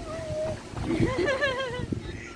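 High-pitched human laughter: a short falling vocal sound, then a wavering, laughing cry of nearly a second from about halfway through.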